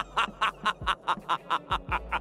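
A cartoon villain's evil laugh: a fast, even run of 'ha' bursts, about six a second.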